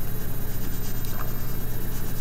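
White colored pencil rubbing on toned paper in short shading strokes, over a steady low electrical hum.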